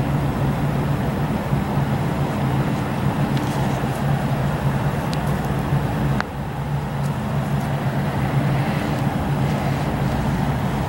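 Steady road-traffic noise with a low droning hum, which drops out for about a second a little past the middle, and a few faint ticks.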